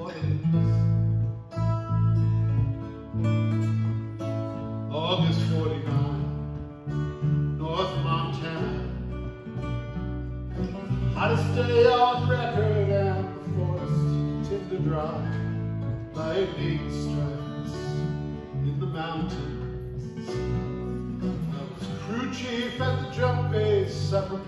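Live folk song: two acoustic guitars strumming over an electric bass line, with a male voice singing in phrases every few seconds.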